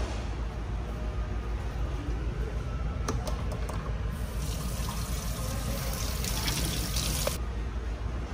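Water running from a sensor tap into a stainless-steel hand-wash sink. It starts about four seconds in and stops sharply about three seconds later. A sharp click comes just before it, and a steady low hum runs underneath.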